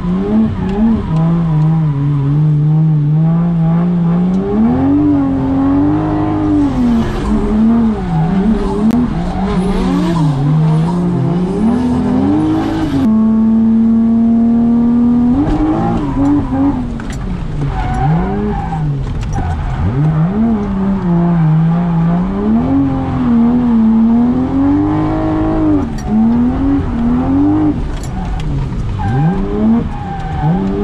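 Car engine heard from inside the cabin, driven hard on a wet track: the revs climb and drop every few seconds through corners. About 13 seconds in it holds a steady pitch for a couple of seconds before rising and falling again.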